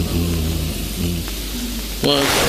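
A man's low voice holding drawn-out hums and vowels in short breaks between phrases, over a steady low hum and hiss.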